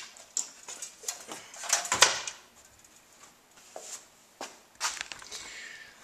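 Handling noise of a hard disk drive being turned over by hand: scattered clicks, knocks and rustles, with the loudest knocks bunched about two seconds in and a few more near the end.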